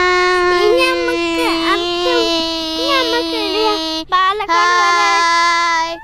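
A child holding one long, steady sung note, breaking off briefly about four seconds in and taking it up again. A second child's voice wavers over it.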